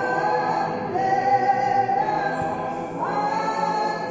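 A group of voices singing a slow hymn or chant in held notes, moving to a new note about once a second.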